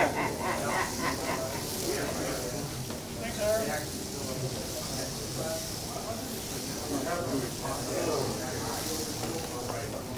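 HO-scale slot cars running on a multi-lane track, their small electric motors giving a steady high hiss, with people talking in the background.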